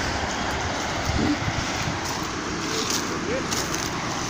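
Steady road traffic noise: cars passing on a highway, a constant wash of tyre and engine sound.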